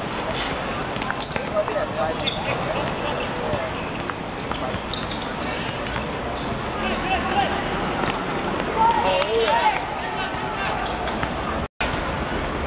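A football being kicked and bouncing on a hard court, with players shouting during play. The sound cuts out for a split second near the end.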